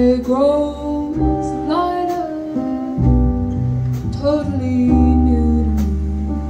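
Live jazz quartet: a woman singing a melody with long gliding notes over piano, upright double bass and drum kit with light cymbal strokes.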